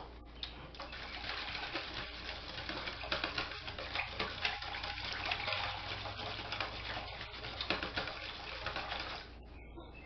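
A wire whisk beating thin, watery vinegar sauce in a stainless steel bowl: continuous sloshing and splashing with small clinks of the wires against the bowl. It stops about a second before the end.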